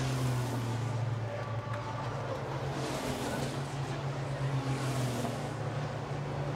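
Turbo-diesel race trucks running at speed on a circuit, their engine and tyre noise swelling twice as trucks pass, over a steady low drone.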